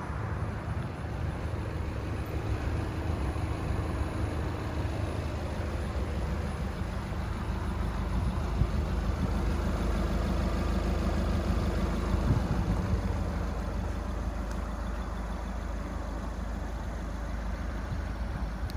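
Car engine idling steadily: a low, even hum under outdoor background noise.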